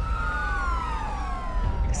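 Police car siren wailing, its pitch sliding slowly downward, over a steady low rumble.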